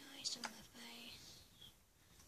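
A girl whispering faintly to herself, with a few short murmured sounds in the first second.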